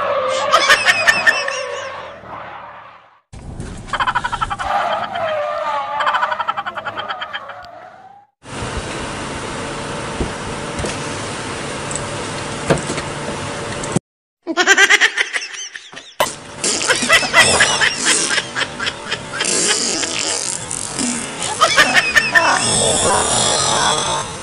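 An edited run of comedy sound clips: laughter and shouting voices over music, broken by a stretch of steady noise in the middle, with abrupt cuts between segments.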